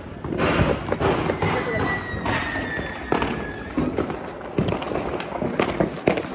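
Firecrackers and fireworks going off all around: irregular pops and cracks over a continuous hiss and crackle, with a faint falling whistle about two seconds in.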